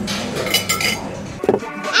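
Cutlery and crockery clinking at a dining table, a cluster of light clinks about half a second in, over restaurant room noise.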